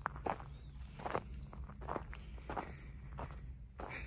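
Footsteps through weedy grass and vegetation in a garden plot: soft, irregular steps at about two a second.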